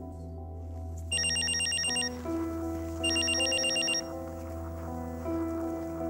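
A telephone ringing twice, each ring a fast high trill about a second long, over soft sustained background music.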